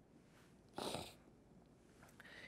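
Near silence, broken about a second in by one short rush of breath close to a pulpit microphone, lasting under half a second.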